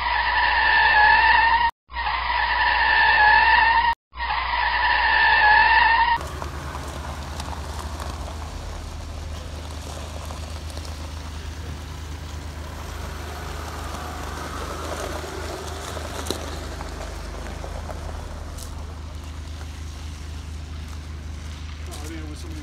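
A loud, high-pitched tyre-skid squeal comes in three bursts with abrupt cut-offs over the first six seconds. It gives way to a white Land Rover Discovery's engine running steadily at low revs.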